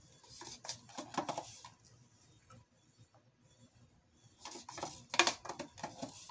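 A wooden stir stick scraping and tapping inside a cup of gold acrylic paint to load it up, in two short bursts of clicks and scrapes about four seconds apart.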